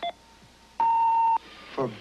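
Digital timer going off with a single steady electronic beep about half a second long, which stops abruptly.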